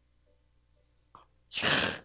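Near silence with a faint click a little past a second in, then near the end a loud, short, breathy burst of air from a man, sneeze-like.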